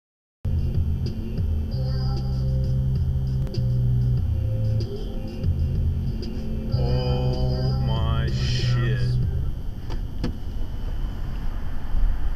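Engine and road noise inside a moving vehicle: a steady low drone that steps up and down in level, with a rising whine that climbs for about two seconds around the middle.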